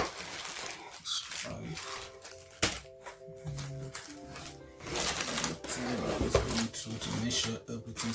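Plastic bags and bubble wrap crinkling and rustling, with light knocks against a cardboard box, as packed camera parts are dug out by hand. Background music plays with it, clearest in the first half.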